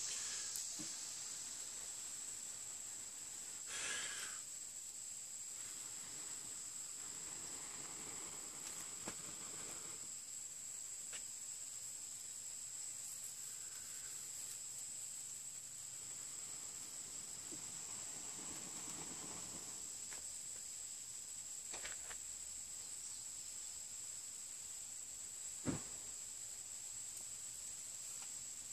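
A steady high insect drone, with several soft blows of breath into a smouldering pine-needle tinder bundle to bring it to flame, and a light knock near the end.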